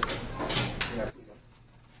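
A few sharp clicks over a trailing voice and handling noise. The sound cuts off abruptly about a second in, leaving only faint room hiss.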